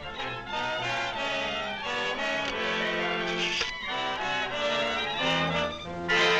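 Orchestral film score with brass to the fore, playing a series of held, tense chords.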